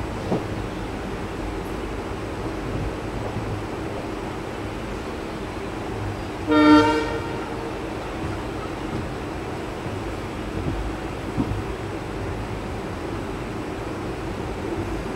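Passenger train running steadily along the track, heard from inside a coach, with one short blast of the ALCO WDG3A diesel locomotive's horn about halfway through.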